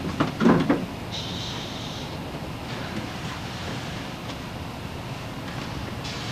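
A few dull knocks and bumps in the first second as a person squeezes in through the hatch of a wood-built capsule mockup, then a brief scraping hiss, over a steady background rumble.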